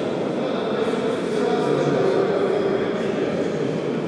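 Steady din of a reverberant indoor sports hall, with indistinct voices in the background.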